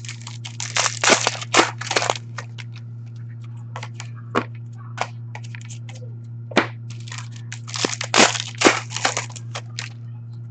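Hockey trading cards and their pack wrappers being handled: crackly rustling and card flicks in two busy spells, about a second in and again near eight seconds, with scattered single clicks between. A steady low hum runs underneath.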